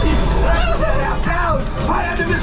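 Ride soundtrack in a Millennium Falcon cockpit flight simulator: music and voices over a loud, steady deep rumble.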